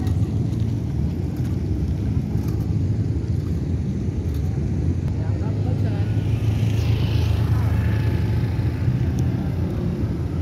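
A steady low rumble of motor-vehicle and road noise.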